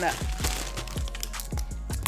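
A plastic poly mailer bag crinkling as it is handled and turned over, over background music with a steady beat.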